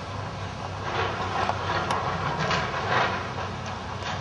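Hydraulic excavator's diesel engine running steadily under load while it demolishes a brick building, with several irregular crunches and crashes of breaking masonry and falling debris.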